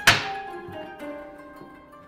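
A single sharp wooden thunk, as a hardwood panel drops into place against its neighbour, trailing off over about half a second. Background music of plucked strings plays throughout.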